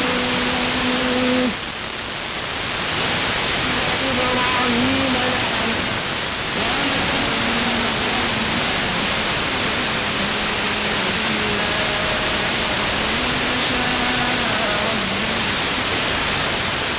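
Distant FM reception, via sporadic-E, of Egypt's ERTU Quran radio on 90.5 MHz through a Blaupunkt car radio: Quran recitation in long, held, wavering notes, barely above heavy hiss. The signal fades for about a second near the start.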